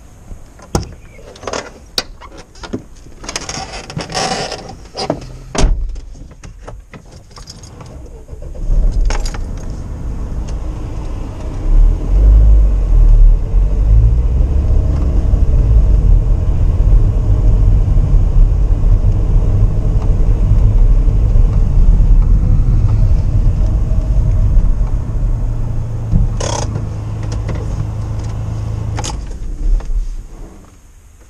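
Clicks, knocks and a jangle of keys as the vehicle is got into and started, then a loud, steady low engine and road rumble heard from inside the cab as it drives. The rumble grows louder from about 12 seconds and eases off a few seconds before the end, with a couple of sharp clicks.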